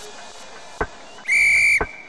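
A short, shrill whistle blast, one steady high note held for about half a second, a little past halfway through and louder than anything else. Soft knocks of the backing music come just before and after it.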